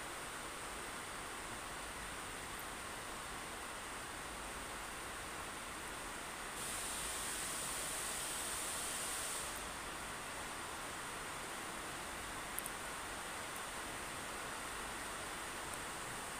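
Steady faint hiss of background room noise, with no distinct event. A louder, higher hiss rises for about three seconds in the middle, and a couple of faint clicks come about two thirds of the way through.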